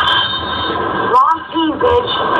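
A steady, buzzing electronic tone in a dubbed film or TV sound clip, with a short voice-like sound about a second in.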